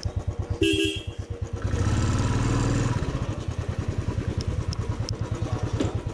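Royal Enfield Classic 350 single-cylinder engine running at low speed with an even beat, getting louder for about a second around two seconds in. A short horn toot sounds about half a second in.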